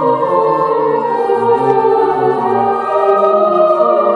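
Children's choir singing in several parts at once, with long held notes moving slowly from chord to chord, in a church.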